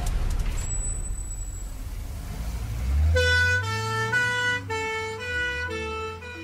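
Low rumble of a bus-crash sound effect dying away, with a thin high ringing tone for about a second near the start. About three seconds in, gentle music begins: a melody of held notes changing every half second over a bass line.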